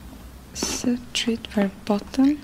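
A voice speaking softly in a few short, quiet syllables.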